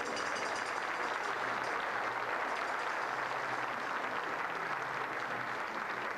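Theatre audience applauding, a steady, dense clapping.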